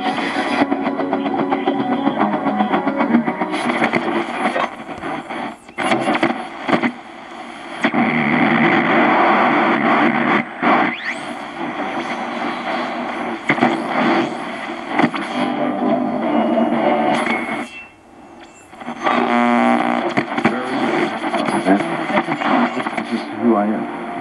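Sony SRF-59 pocket radio's small speaker playing broadcast voices while it is tuned, the stations cutting in and out with brief gaps, static and a few gliding whistles between them. This is typical of AM reception, which the owner says comes in very well on this set.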